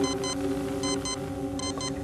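Film motion tracker beeping: a short double beep about every three-quarters of a second, over a steady low hum.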